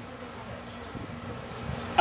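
A steady low buzz of background room noise with no clear break or change.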